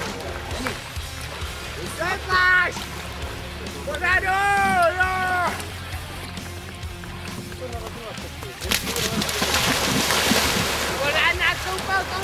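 People splashing and wading in shallow sea water, with two drawn-out shouts from the bathers, the second about 4 s in being longer. From about 9 s the splashing grows louder.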